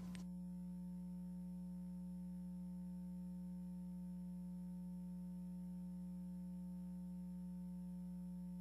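Faint, steady electrical hum: a low buzzing tone with a ladder of fainter overtones, unchanging in pitch and level.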